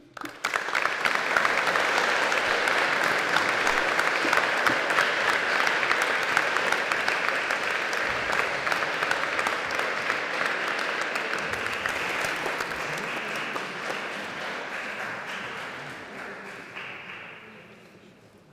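Audience applauding: the clapping breaks out all at once, holds steady, then thins and dies away over the last few seconds.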